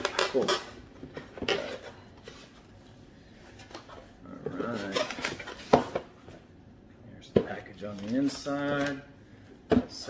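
Cardboard packaging being handled and pulled from a box, with several sharp knocks as the items are set down. Brief wordless vocal sounds come in twice, about halfway through and near the end.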